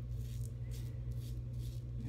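Executive Shaving Co. Outlaw stainless steel double-edge safety razor scraping through lather and stubble on the neck in a series of short, faint strokes, over a steady low hum.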